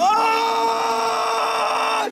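A young man letting out one long, high-pitched scream that rises at the start, then holds steady at one pitch.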